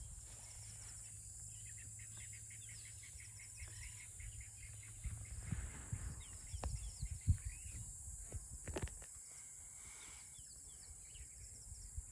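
Bush ambience of small birds calling, with a rapid run of repeated chirps in the first few seconds and scattered calls later, over a steady high insect drone. A few sharp knocks come near the middle.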